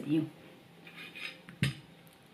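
A single sharp clink of a dish or kitchen utensil, about one and a half seconds in, after a last spoken word.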